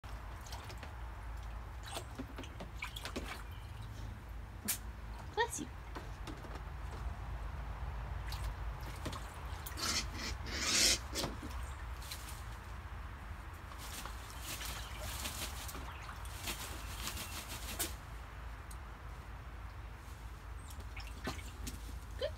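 A black vulture bathing in a shallow plastic kiddie pool: irregular splashes and drips of water as it dips and moves in the water, with the biggest splash about halfway through and a cluster of smaller splashes a few seconds later.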